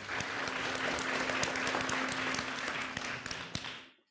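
Audience applauding, a dense patter of many hands clapping that dies away just before the end.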